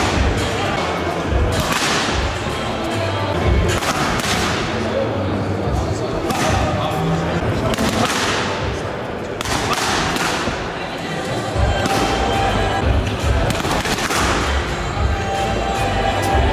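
Boxing gloves smacking against focus pads in short combinations, sharp slaps with a hall echo, over background music.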